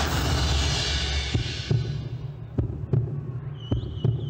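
Show soundtrack: loud music fades out under two seconds in, giving way to a slow heartbeat effect, paired low thumps about once a second over a low hum.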